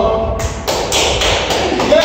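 Hands clapping at the end of a dance, a quick run of about four claps a second starting about half a second in, with voices over it.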